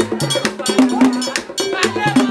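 Music: a metal bell struck in a steady pattern, about four strikes a second, over a bass line stepping between notes.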